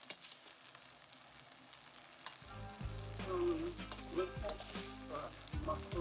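Macaroni sizzling in a steel pot as it is stirred and tossed with a plastic spoon, with soft crackling and the scrape and click of the spoon against the pot. A low steady hum comes in about halfway.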